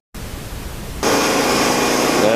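Static hiss from a video-noise transition, lasting about a second. About a second in it cuts to a louder, steady noise.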